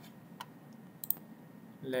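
Computer mouse clicks: a single click about half a second in, then a quick pair of clicks about a second in.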